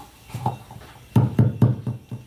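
A live wireless microphone being handled and tapped, its thumps picked up and played through the amplifier and speaker. There are a few faint knocks near the start, then four loud, bass-heavy thumps in quick succession in the second half.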